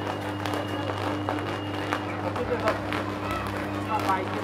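Power line burning and arcing: a steady electrical buzz with irregular sharp crackles and snaps, over the voices of people nearby.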